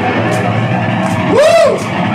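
Live rock band playing, with electric guitars and drums and regular cymbal strokes. About a second and a half in, a loud pitched note bends up and back down.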